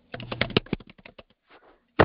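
Typing on a computer keyboard: a quick run of keystrokes in the first second, then a few scattered taps.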